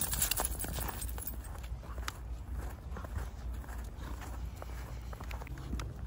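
Footsteps crunching in fresh snow as a dog and a person walk, heard as irregular soft crunches and clicks over a low steady rumble.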